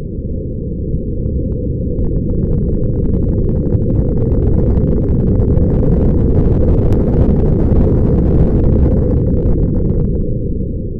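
Logo intro sound effect: a deep, noisy rumble that swells gradually louder, with crackling on top from about two seconds in.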